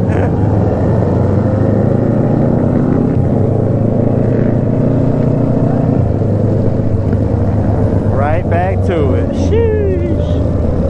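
Motorcycle engine running steadily with a constant low drone while riding in a group of other motorcycles. Near the end, a few short pitched sounds bend up and down over the drone.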